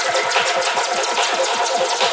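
Trance dance music from a live DJ set: a fast drum roll, about eight to ten hits a second, over held synth chords, with no steady bass, as in a build-up.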